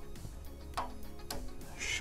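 Faint background music with a couple of light clicks as a plastic radiator-valve adapter is handled on a brass valve.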